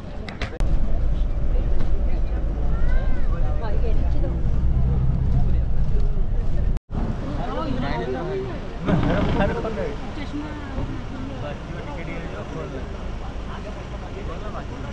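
Bus engine running with a loud low rumble and people's voices over it; after a sudden cut about seven seconds in, passengers' chatter over a quieter engine hum inside the bus.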